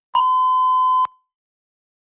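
Electronic countdown-timer beep: one steady tone lasting about a second that cuts off sharply, signalling that the timer has run out.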